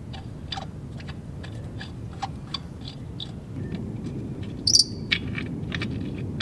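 Small metal clicks and ticks of lug nuts being handled and threaded by hand onto a field cultivator's wheel studs, with one brighter ringing metal clink a little before the end.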